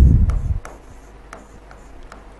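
A stylus writing on an interactive display screen, with a few faint tip clicks and light scratching. A low rumble at the start dies away within about half a second.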